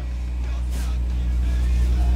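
A steady low rumble, growing slowly louder.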